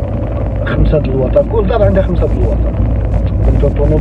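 Steady low rumble of a car driving, heard inside the cabin, with a voice talking over it.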